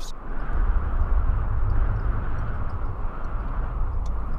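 A steady, deep rumbling roar with a hiss above it, a cinematic sound effect that swells in just after the start and holds without sharp impacts.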